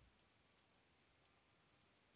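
Computer mouse button clicking faintly as letters are drawn stroke by stroke in a paint program: about six short, sharp clicks at uneven intervals.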